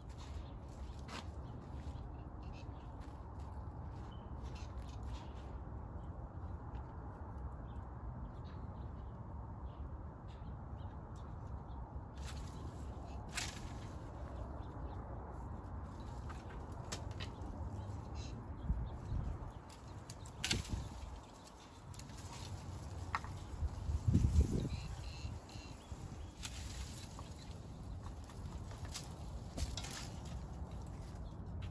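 Pruning shears snipping the stems of a Quick Fire hydrangea, as scattered sharp clicks over a steady low background rumble. A louder low thump comes about four-fifths of the way through.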